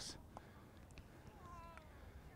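Near silence, with a faint, short call that falls in pitch about one and a half seconds in.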